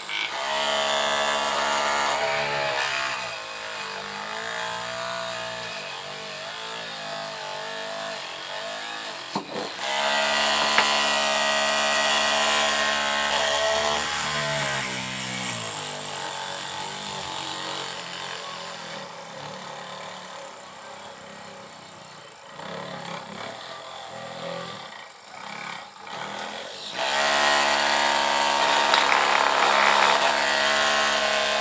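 Homemade DC-motor drill in a PVC pipe housing boring into a scrap of wood. Its motor whine falls in pitch as the bit bites and rises again, louder in three spells: at the start, from about ten seconds in, and near the end.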